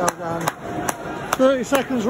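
A few sharp handclaps close to the microphone, roughly half a second apart, with short shouts from a nearby voice rising and falling in pitch in the second half.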